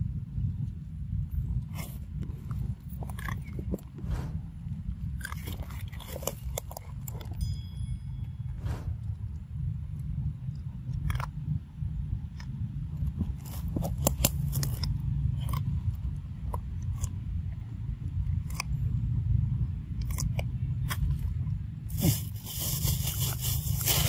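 A macaque biting and chewing corn kernels off the cob close to the microphone: scattered wet crunches and clicks over a steady low rumble, with a loud rustling burst near the end.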